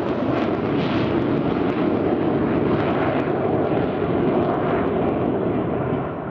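A USAF F-15E Strike Eagle's twin turbofan jet engines passing low along a valley: a loud, steady jet rumble whose higher hiss slowly fades as the aircraft draws away.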